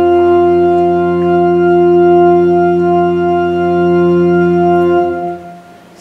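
An organ holding one long, drawn-out note that stays steady for about five seconds, then stops and fades out near the end.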